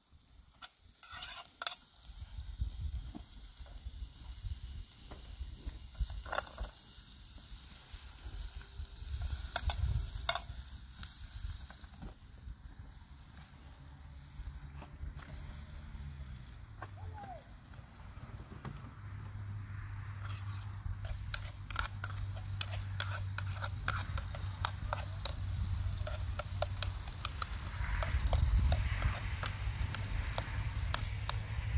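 Food frying in a metal pan over an open twig fire: the sizzling builds and grows louder in the second half once oil is poured in. Scattered clicks of the spoon against the pan and the crackle of burning twigs run through it, over a low steady rumble.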